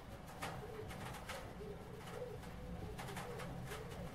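Faint bird cooing in short, low notes, with a few soft clicks.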